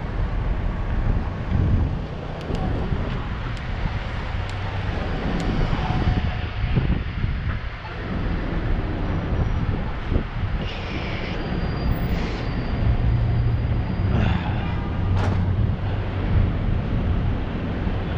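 Downtown street traffic: vehicles running and passing at an intersection, with a steady low rumble throughout. A faint high whine is heard for a few seconds near the middle.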